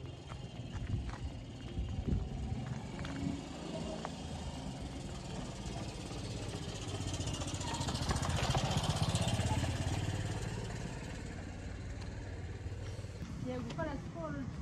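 A motorcycle passing close by: its engine noise builds to a peak about eight to nine seconds in, then fades away.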